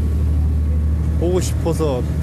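Steady low drone of a ship's engine running underway, with a person's voice breaking in briefly about a second and a half in.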